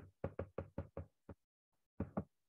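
Stylus tapping on a tablet's glass screen during handwriting: a faint, irregular run of small taps, several a second, that stops after about a second and a half.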